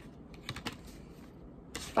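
A deck of tarot cards being shuffled by hand: a few faint, light card clicks, about half a second in and again near the end.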